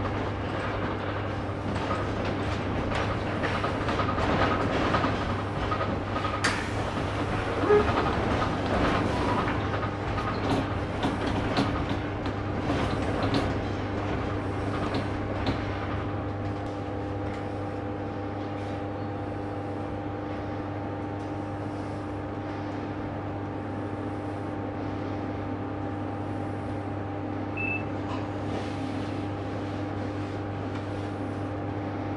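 Interior of a Ganz diesel multiple unit rolling slowly through a station: wheels clicking and the car rattling over rail joints and points for the first half. After that the clicks thin out and a steady hum from the train's engine and equipment carries on under it.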